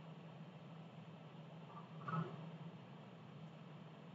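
Quiet room tone: a faint steady low hum, with one soft, brief sound about two seconds in.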